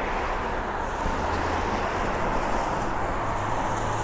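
Steady traffic noise, cars on wet roads, with a low engine hum coming in about a second in and growing stronger near the end.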